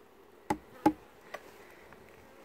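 Honeybees buzzing faintly around an open Langstroth hive, with two sharp wooden knocks about half a second and a second in, then a lighter click, as a frame is lifted out and bumps the wooden hive box.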